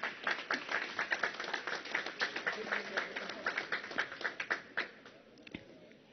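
Applause from the assembly: many hands clapping, fading out about five seconds in.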